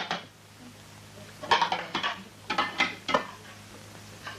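Dishes clinking and clattering as they are handled, in four short bursts over the second half.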